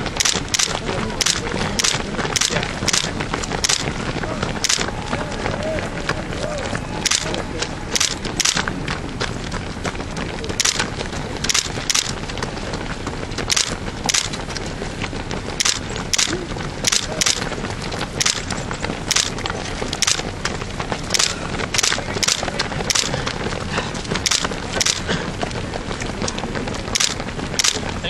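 Footfalls of many runners passing close by on an asphalt road: running shoes striking the pavement in uneven sharp strikes, about two a second, over faint voices.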